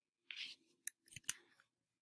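A short, faint rustle followed by a few soft clicks: hands working a computer's controls while leaving a slideshow for the editor.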